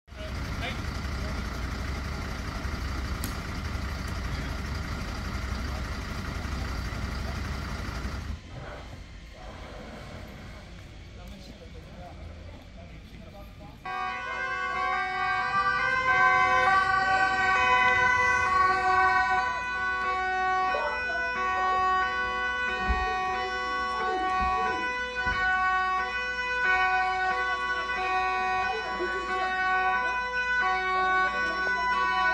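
Background music of sustained, held chords takes over about halfway through and is the loudest sound. Before it come a few seconds of loud, even outdoor noise and a quieter stretch.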